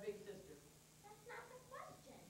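Faint, distant voices of young actors speaking lines on a stage, in two short phrases: one at the start and one about halfway through.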